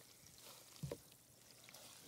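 Faint trickling and sloshing of water as wet raw fleece is lifted and squeezed by gloved hands in a plastic tub of hot rinse water.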